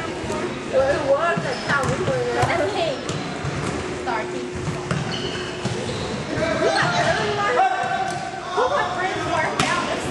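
Basketball bouncing on a hardwood gym floor during play, with repeated short thumps and players' footsteps, echoing in the large hall.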